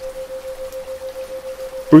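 Rain sound with a steady pure tone near 528 Hz pulsing about seven times a second: a 7 Hz isochronic tone meant to lead the brain into theta-wave relaxation. A voice starts right at the end.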